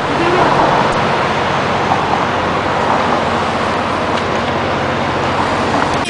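Steady, loud street traffic noise, with vehicles running close by.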